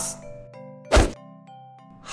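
Soft background music with a few held notes, and a single short thump about a second in.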